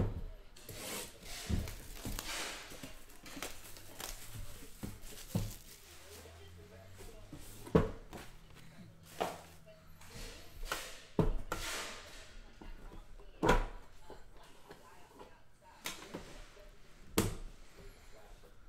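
Hands tearing and crinkling plastic shrink-wrap off a sealed trading-card box, with scattered knocks and clunks as the box lid and an inner box are handled; the sharpest knocks come about 8, 13 and 17 seconds in.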